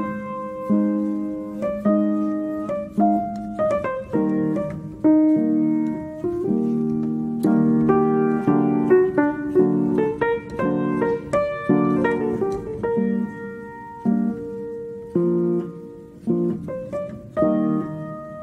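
Background piano music: single notes and chords struck one after another, each fading away.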